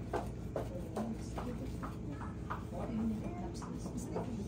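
Quiet background chatter of a few voices over a steady low hum, with scattered light clicks and rustles of handling.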